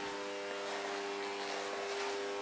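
Steady electrical hum with a buzzy edge, holding one even pitch without change.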